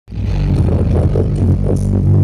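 Loud music from a stack of four large subwoofer cabinets in a sound-system check, heavy with deep, sustained bass notes; it starts abruptly.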